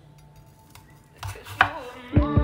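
Chef's knife chopping an onion on a wooden cutting board: quiet at first, then two sharp knife strikes against the board in the second half, the second the louder.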